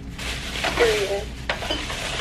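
Thin plastic takeout bag rustling and crinkling as it is untied and opened by hand, with a few sharp crackles. A short voice is heard about a second in.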